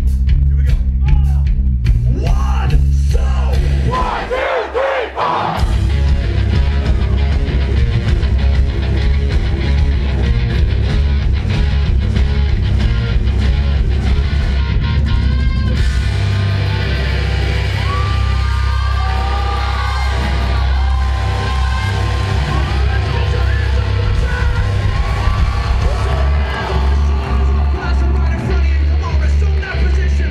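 Live rock band playing loud with heavy bass and drums, and the crowd yelling along. About four seconds in, the bass drops out for a moment before the full band comes back in.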